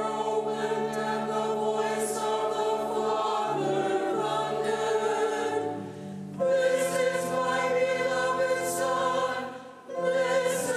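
A church choir sings the Gospel acclamation over held accompanying chords. The chord changes about three and a half seconds in and again near six seconds, and there is a brief breath near the end.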